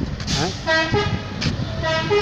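A vehicle horn tooting twice, each toot a steady electronic tone that steps down to a lower note partway through, over street noise.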